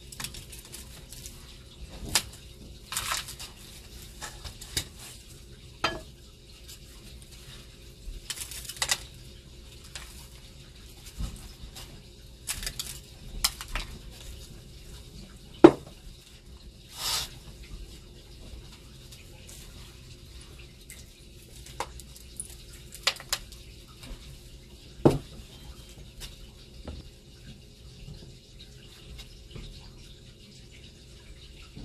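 Hands working in a disposable aluminium foil tray and among ceramic bowls: irregular clicks, taps and brief rustles as earth is sprinkled in and dried red chiles are laid in, with a few sharper knocks.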